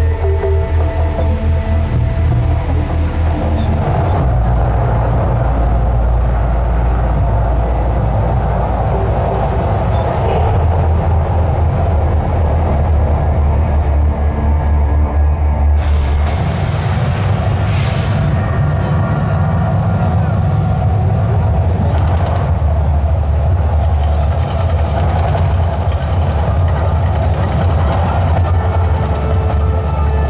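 The volcano show's soundtrack plays loud over outdoor speakers: deep, rumbling music with drumming. From about 16 s on, sudden rushing bursts from the volcano's flame and water jets come in several times over the music.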